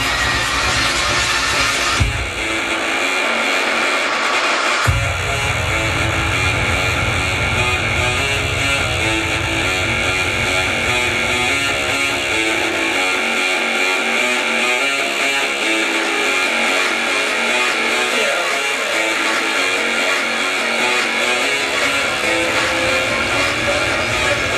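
Psytrance music played through a Numark CDMIX1 dual CD deck, with a steady beat and rolling bass. The bass drops out about two seconds in, slams back in near five seconds, then falls away again from about halfway, leaving the higher synth layers running.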